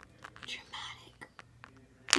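A person whispering quietly for about a second, followed by a few small clicks.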